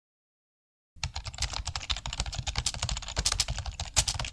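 Rapid computer keyboard typing, quick key clicks starting about a second in, the kind of typing sound effect laid under text being typed into a search bar.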